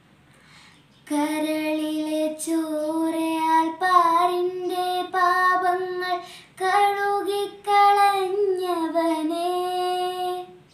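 A girl singing a Malayalam Christmas carol solo and unaccompanied, coming in about a second in after a brief pause for breath and holding long, steady notes.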